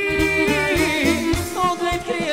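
Live Serbian wedding band playing folk music: a long, wavering held note in the melody over a regular bass beat, with a singer's voice.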